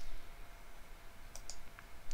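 Two quick computer mouse clicks about a second and a half in, followed by a fainter third click.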